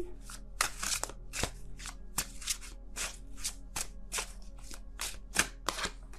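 A deck of tarot cards being shuffled by hand: a run of short, crisp card slaps, about three or four a second.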